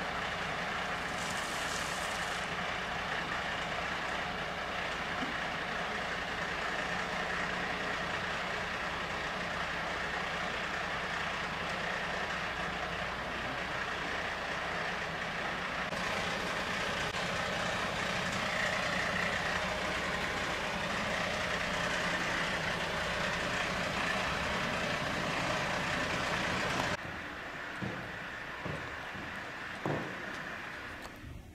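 Fire engine's diesel engine running steadily at idle, a continuous rumble and hum, which cuts off abruptly near the end.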